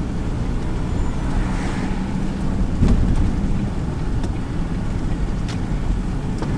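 Car engine and tyre noise heard from inside the cabin while driving, a steady low rumble, with a light knock about three seconds in.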